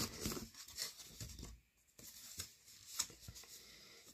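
A cardboard sleeve scraping and sliding off a cardboard box, with rustling handling noise and a few light taps. There is a brief lull about one and a half seconds in.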